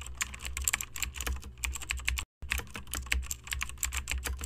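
Rapid, irregular clicking with a steady low hum underneath. It cuts out completely for a moment a little past two seconds in, then resumes.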